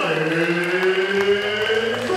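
Singing or chanting voices holding long notes, one slowly rising in pitch, with a deep low part that drops out for the first second.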